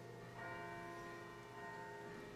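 A bell rung at the consecration of the host, faint, its tones ringing on. It is struck again about half a second in and once more, more weakly, about a second and a half in.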